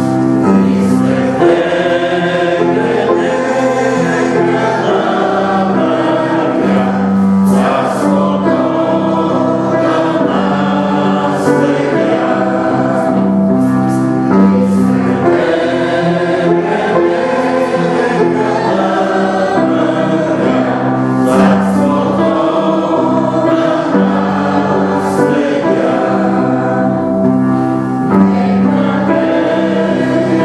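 A choir singing a slow sacred hymn in long, held chords, steady and full throughout.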